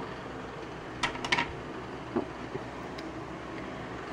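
Steady low room noise, like a fan running, with a few faint clicks about a second in and a brief soft "oh" just after two seconds.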